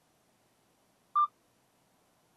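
A single short electronic beep a little over a second in, with near silence around it.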